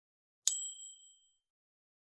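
A single bright ding: the notification-bell chime sound effect of an animated subscribe button. It strikes about half a second in and rings out over about a second.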